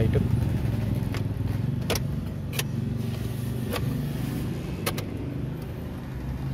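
Sharp clicks of a key being turned in a Suzuki Wagon R's ignition switch, five or so spread over a few seconds, with the ignition being cycled while a new key is registered to the immobilizer. A steady low hum runs underneath.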